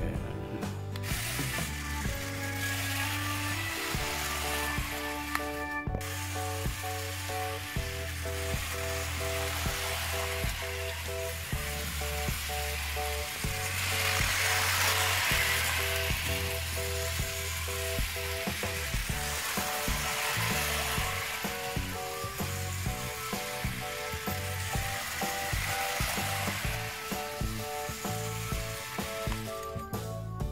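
Small electric motor and gearing of an HO-scale remote-control CC206 model locomotive running forward, a ratcheting rattle over the plastic track that grows louder about halfway through. Background music with a steady bass line plays under it.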